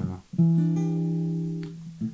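Acoustic guitar chord plucked once about a third of a second in and left to ring, slowly fading.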